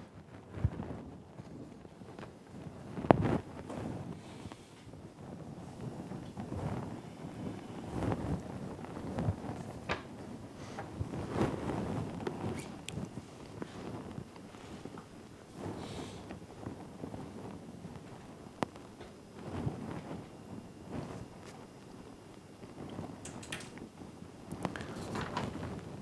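Lecture-room background while students write: soft scattered rustling of paper and movement, with a few light clicks and knocks here and there.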